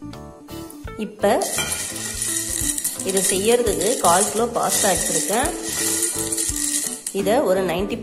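Dry elbow macaroni rattling and clinking against a glass dish as a hand stirs and scoops through it, from about a second in until near the end, over background music.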